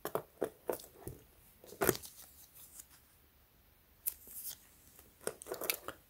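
Scattered light clicks and rustles of a smartwatch with a metal link bracelet being turned over in the fingers, the loudest click about two seconds in.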